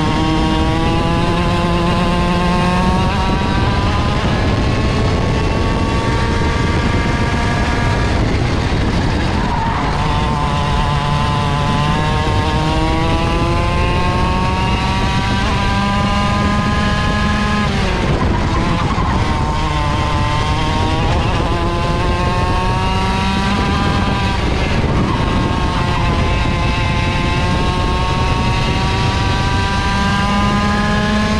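Mini ROK kart's 60cc two-stroke engine, heard onboard under race load. Its revs climb steadily down each straight and then drop sharply as the driver lifts for the corners, several times over.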